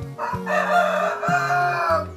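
A rooster crowing once, one long call that fills most of the two seconds, over low background music.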